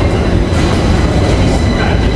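Stockholm metro train running in the station, a loud steady rumble with a thin high whine over it.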